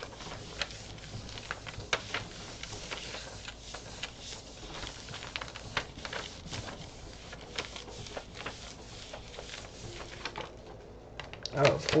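Hands rubbing and pressing a sheet of paper down onto a gel printing plate to transfer a print: soft paper rustling with many scattered light clicks and taps.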